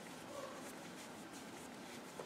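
Faint, soft handling sounds of yarn and a crochet hook being worked by hand, a few light ticks over low room noise.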